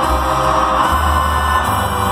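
A live banda-style ranchero band playing, heard from the audience in an arena, with a deep bass line that steps to new low notes twice.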